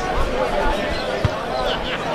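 Voices of players and spectators calling out across an open football ground, with one sharp thump a little past halfway.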